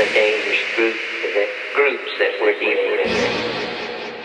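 Techno DJ mix in a breakdown: the kick drum and bass drop out, leaving a thin, filtered vocal-like sample over a synth pad. Near the end a low rumble creeps back in as the music fades down.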